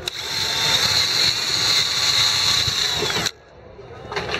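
Cordless drill running at steady speed as it bores a hole, for about three seconds, then cutting off suddenly.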